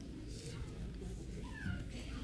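A small child's brief high-pitched squeal, falling in pitch, about one and a half seconds in, over low room noise.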